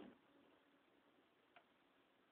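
Near silence: faint background noise with a single soft click about one and a half seconds in.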